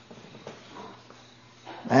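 A pause in a man's speech with faint background noise, then near the end he begins a drawn-out hesitation sound, 'à'.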